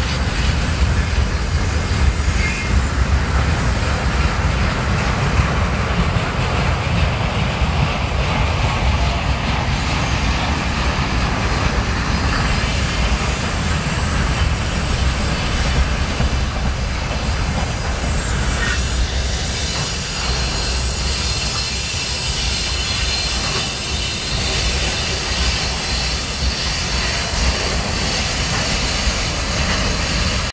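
Freight train of open wagons and tank cars behind a VL8m electric locomotive rolling past: a steady, continuous rumble of steel wheels on rail, easing slightly in the last third.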